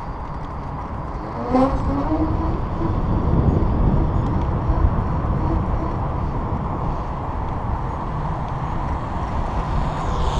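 Steady wind rush and road rumble on a handlebar camera as an electric bike rides fast over asphalt. A short pitched sound that dips and rises in pitch comes about one and a half seconds in.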